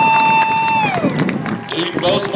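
A spectator's high-pitched held cheer, one long "woo" that slides down in pitch about a second in, followed by softer crowd noise.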